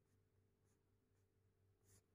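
Near silence: room tone with only a faint steady low hum.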